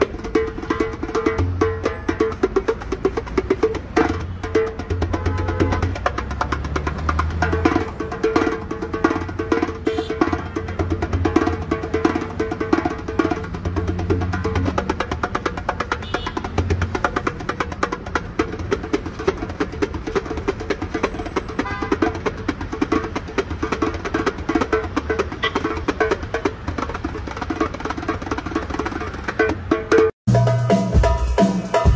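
Darbuka (Middle Eastern goblet drum) solo played with rapid finger strokes and rolls in a dense, fast stream, with deep bass strokes now and then.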